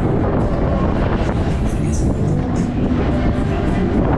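Loud fairground ride music heard from a car of a running octopus ride, over a steady low rumble of the moving ride.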